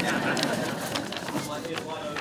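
An audience laughing at a joke, a dense mix of many voices that gradually dies down.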